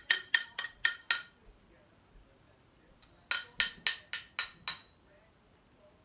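Metal spoon tapped against a small stoneware bowl: a run of quick ringing clinks, about four a second, through the first second, then a second run of about six clinks from about three seconds in.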